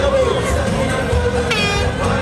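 Loud parade music from a carnival float, with crowd voices mixed in. A short horn blast sounds about one and a half seconds in.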